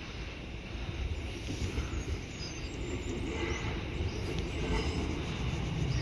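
British Rail Class 153 diesel multiple unit approaching, with a low rumble of engine and wheels on rail that grows gradually louder.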